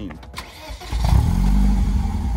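BMW Z3's 1.9-litre four-cylinder engine, fitted with an aftermarket exhaust, starting about a second in. It catches with a brief rev that rises and drops back, then settles into a steady idle.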